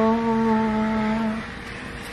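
A voice humming one held, steady note that fades out about one and a half seconds in.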